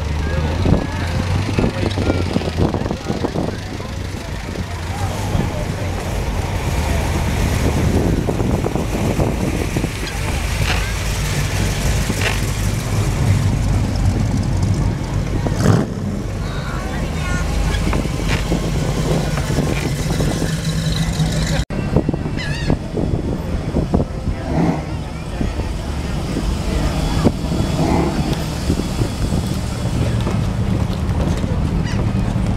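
Classic car engines running at low speed as the cars roll slowly past one after another, with a crowd talking around them. The sound drops out for an instant about two-thirds of the way through.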